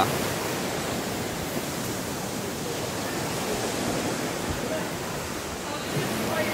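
Rough sea surf breaking on a sandy beach: a steady, even rush of waves.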